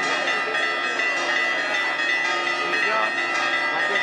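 Church bells ringing continuously, many overlapping tones held at a steady level.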